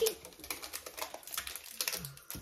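Chocolate bar wrappers crinkling and rustling as they are peeled off by hand, in a run of small irregular crackles.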